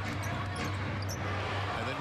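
Arena crowd noise under a steady low hum, with a basketball being dribbled on a hardwood court.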